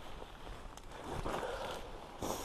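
Footsteps and rustling of a hiker pushing through ferns and dry leaf litter on a steep forest slope, with a couple of faint sharp clicks near the middle.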